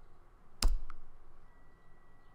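A single sharp click from operating the computer, followed about a quarter second later by a fainter click, against a quiet room background.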